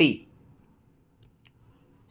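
A man's speaking voice trails off at the very start, falling in pitch, followed by quiet room tone with a few faint light clicks about a second and a half in.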